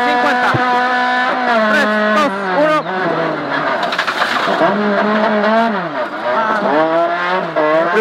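Rally car engine heard from inside the cockpit, held at high revs on a gravel stage. The pitch falls as the driver lifts off about three seconds in and again near six seconds, then climbs back each time, with a rushing gravel noise and scattered stone clicks under the car in the middle.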